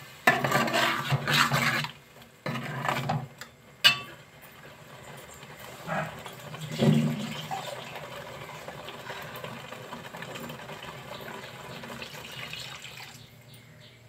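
A steel ladle scraping and stirring thick curry in a large steel pot for the first few seconds, then a kitchen tap running steadily into a steel vessel, stopping shortly before the end.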